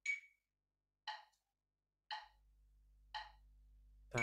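Metronome clicking in four-four at about one beat a second, the first beat of the bar accented with a higher click: a one-bar count-in, set a little slower.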